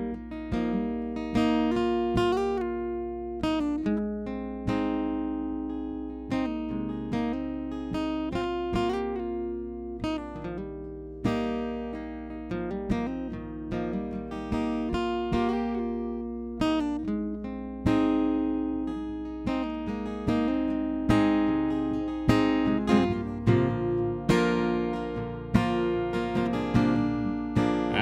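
Acoustic guitar played solo, a run of picked notes and strums, each ringing out and fading before the next.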